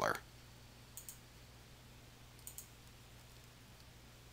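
Computer mouse clicks: two faint pairs of quick ticks, one about a second in and another about two and a half seconds in, as the dialog boxes are clicked closed.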